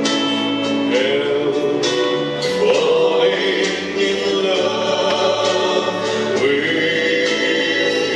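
A man singing a melody into a microphone over instrumental accompaniment, holding some notes long.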